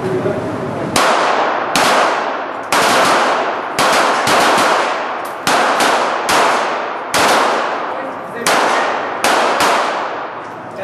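Rapid single shots from .22 rimfire target pistols in a timed series, about a dozen sharp cracks at uneven spacing, some only a fraction of a second apart. Each shot is followed by a ringing echo off the walls of the indoor range.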